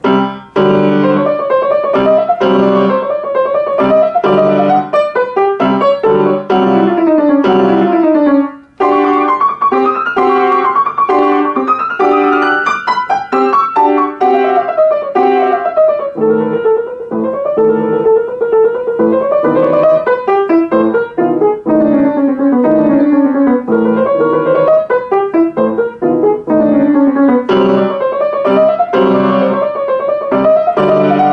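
Grand piano played solo: a busy passage of quick repeated notes and rising and falling runs, with a brief break about eight and a half seconds in.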